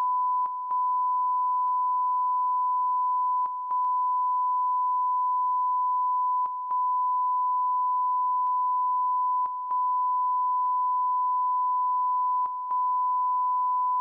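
Broadcast line-up test tone: a steady 1 kHz pure tone played with colour bars. It is broken by a brief dip about every three seconds.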